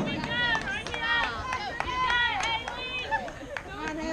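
Several high-pitched voices calling out and chanting over one another, the sound of softball players cheering, with a sharp knock right at the start.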